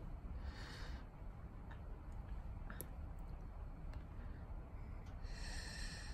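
Two soft breathy exhales through the nose, one about half a second in and a longer one near the end, over a steady low rumble, with a few faint taps in between.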